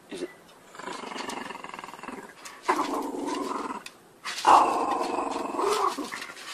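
Small dog growling in play as it tugs a ring toy held by a person's hand: three long growls, the last the loudest.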